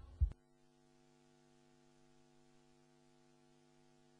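A brief low thud right at the start, then a faint, steady electrical mains hum with no other sound.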